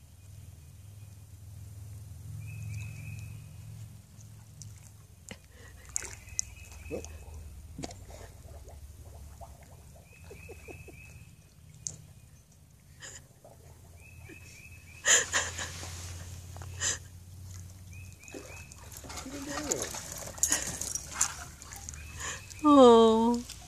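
A dog's paws splashing and sloshing in water pooled on a sagging pool cover, in short spurts that are loudest about fifteen seconds in and again near the end.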